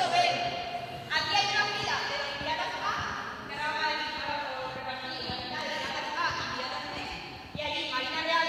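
Voices of a group of students talking and calling out, echoing in a large indoor sports hall.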